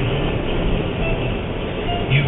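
Steady road and engine rumble inside a moving car's cabin, with the tail of a sung note from the stereo at the very start.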